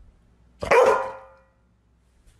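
Golden retriever giving a single short bark a little over half a second in.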